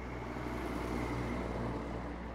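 Tractor-trailer trucks passing on a highway: tyre and engine noise that swells to a peak about midway and starts to fade near the end.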